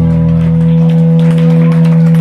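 Electric guitar and bass hold a final chord that rings out steadily through the amplifiers as a live punk rock song ends. Scattered clapping starts to come in about a second in.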